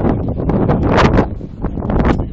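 Wind buffeting the microphone in a loud, rumbling rush, with a stronger gust about a second in.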